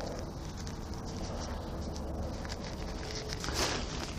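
Quiet rustling of a Quechua Quick Hiker Ultralight 2 tent's polyester flysheet door as it is rolled back and tied open with its toggles, with a brief louder swish of fabric about three and a half seconds in.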